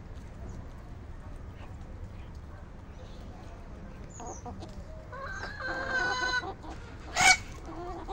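Chickens foraging and calling. A drawn-out, steady-pitched call runs from a little past four seconds to about six and a half seconds, and a short, sharp squawk near the seven-second mark is the loudest sound.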